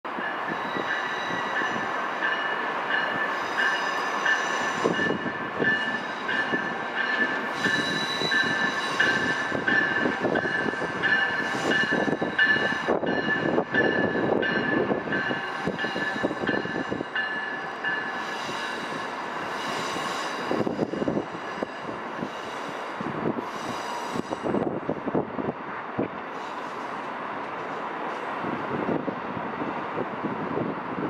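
Amtrak passenger train rolling slowly through curved yard track and switches, its wheels squealing in steady high tones over the rumble and clatter of the cars. The squeal is strongest through the first half and weakens in the second half.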